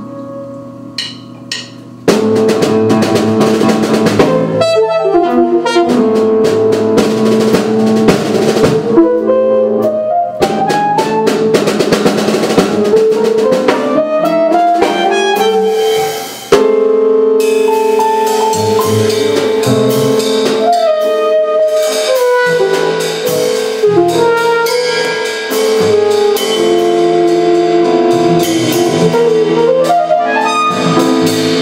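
Free-form jazz quintet playing live: saxophone and an EVI (electronic valve instrument) over drum kit, double bass and piano. Quieter held tones give way to a loud full-band entry about two seconds in, with gliding lines in the middle and a short drop just past halfway before the band comes back in.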